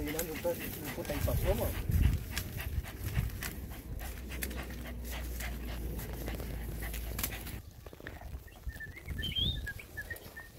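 Hunting dog panting at an armadillo burrow, with rustling and scraping in dry pine-needle litter as the hole is worked with a stick.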